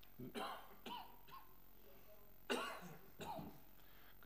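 A man coughing and clearing his throat near a microphone, in short bursts, the loudest cough about two and a half seconds in.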